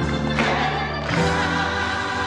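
Gospel choir singing long held notes with a male lead voice, a new chord coming in about a second in.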